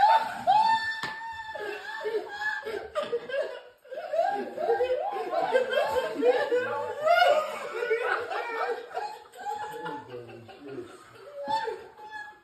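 A group of men laughing, with indistinct talk and exclamations mixed in, several voices overlapping.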